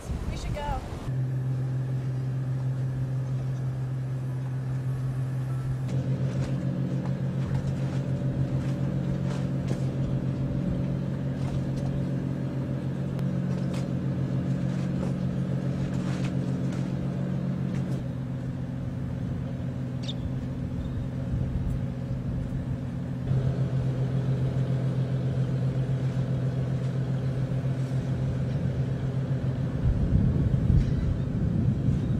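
An engine running steadily at low speed, an even low hum whose pitch and level shift abruptly a few times.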